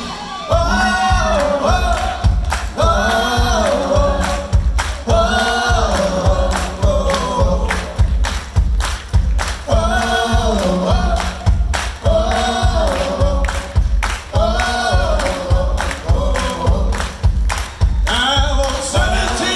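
Male lead vocal singing a rock song through a PA over a steady beat of hand claps, with other voices singing along.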